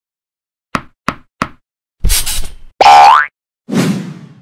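Cartoon sound effects: three quick light taps about a third of a second apart, then a short swish, a loud rising springy boing, and a final noisy hit that fades away.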